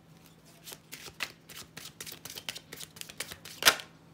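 Deck of tarot cards being shuffled by hand: a quick run of card snaps and flicks beginning under a second in, with one sharper, louder snap just before the end.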